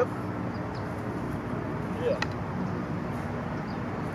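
Short wooden fighting sticks knocking together once, a sharp clack about two seconds in, over a steady low outdoor background hum.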